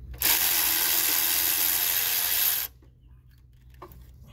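Cordless electric ratchet running steadily for about two and a half seconds as it turns a valve cover bolt, then stopping suddenly.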